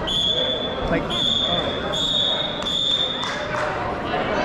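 A high, steady electronic beep sounding four times in a row, each beep nearly a second long with only short gaps between them.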